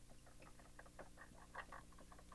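Marker pen writing on a whiteboard: a faint, irregular run of short scratchy strokes.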